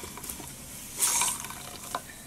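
Soapy water squeezed out of a makeup sponge splashing into a mug, one brief splash about a second in, with a sharp click near the end.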